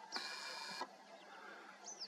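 A short whir of the superzoom camera's lens motor, about two thirds of a second long near the start, steady and high-pitched. A faint high chirp follows near the end.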